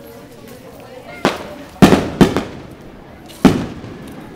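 Four sharp firework bangs, each trailing off with a short echo: three in quick succession in the first half, the last one near the end, over the low talk of a crowd.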